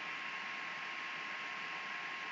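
Steady background hiss of an open microphone line with a faint steady tone running through it.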